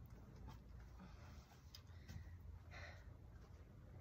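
Near silence, with faint scattered scrapes and clicks of a garden rake pushing loose soil into a ridge along the bed's edge.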